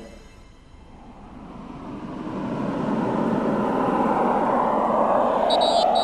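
A rushing noise that fades in and swells over about three seconds, then holds steady. Near the end it is joined by a few short, high electronic beeps.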